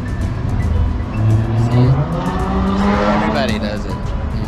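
Background music with held low notes, joined over the last two seconds by a car engine revving up, its pitch rising.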